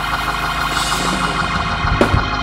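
Church organ music holding full, sustained chords.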